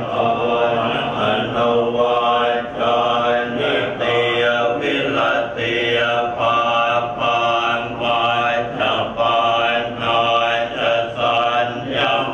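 A group of Thai Buddhist monks chanting in unison, their voices steady and continuous in long phrases with brief breaths between them. The chant is a blessing chant, with the monks linked by the white sacred thread.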